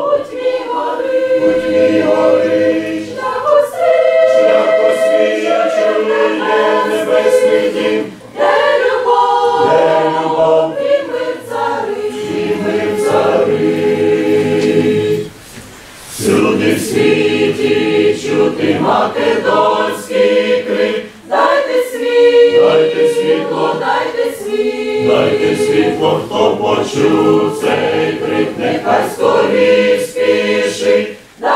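Mixed church choir of men's and women's voices singing a hymn in sustained phrases, with a short break between phrases about halfway through.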